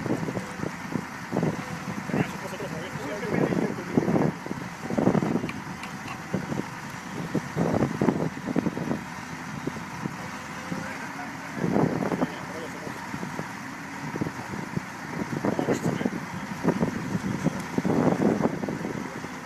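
Engines of heavy construction machinery running steadily, with people talking indistinctly over them in bursts.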